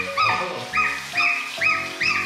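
Month-old goslings peeping over and over, short high calls that rise and fall about two to three times a second, with background music underneath.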